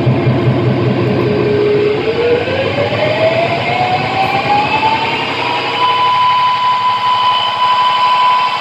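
Electric guitar run through effects pedals and an amplifier, making a loud, dense noise drone with a fast pulsing texture. About two seconds in its pitch glides steadily upward for several seconds, then holds as a steady high whine.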